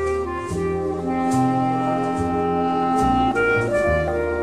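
Light orchestral music in a gentle mood, played by an orchestra, with long held notes that change about once a second.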